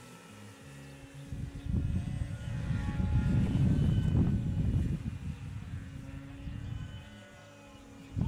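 Radio-controlled model aeroplane's engine and propeller droning steadily as the plane flies past and climbs overhead. A low rumble swells in about two seconds in, is loudest around three to four seconds, and dies away by five.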